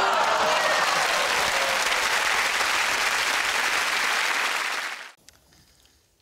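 Studio audience applauding, with a trace of laughter at the start; the applause cuts off abruptly about five seconds in.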